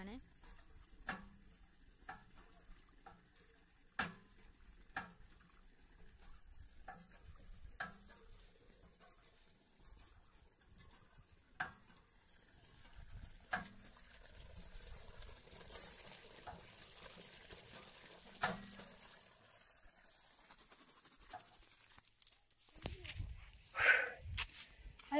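Steel lever-handle borehole hand pump being worked, its handle and pump rod knocking faintly about once a second with each stroke.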